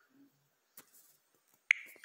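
A single sharp click about two-thirds of the way through, in otherwise near quiet.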